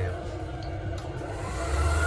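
Electric hand dryer in a train bathroom starting up near the end with a steady low hum from its motor and fan.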